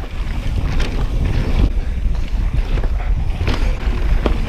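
Wind buffeting the microphone during a fast mountain-bike descent on a dirt trail, over the rumble of the tyres and the bike rattling across bumps, with a few sharper knocks.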